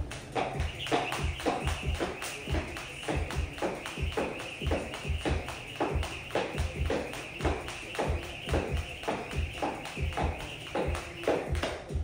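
Cable jump rope slapping a rubber gym floor in a quick, steady rhythm of sharp taps, with a faint whirring hiss from the spinning rope. Background music plays throughout.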